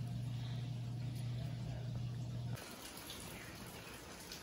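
A steady low hum that cuts off about two and a half seconds in. It is followed by a quieter outdoor hiss with faint scattered ticks, typical of light rain.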